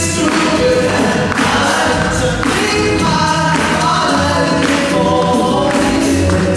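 A male a cappella group sings live through microphones in close harmony with no instruments. A sharp beat lands roughly once a second beneath the held chords.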